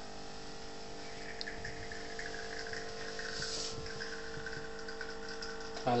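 Capsule espresso machine brewing: its pump runs with a steady hum as espresso is pushed through the capsule into the cup.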